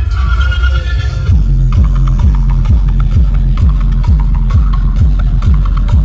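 Electronic dance music played very loud through a tall DJ speaker stack on a truck, heard from within the crowd. About a second in the melody drops out and a beat comes in: a fast run of deep bass hits that fall in pitch, with sharp clicks on top.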